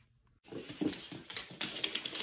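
Small dog's claws clicking and scrabbling on a hardwood floor as it scampers off, starting suddenly about half a second in as a quick, dense run of clicks, mixed with rustling close to the microphone.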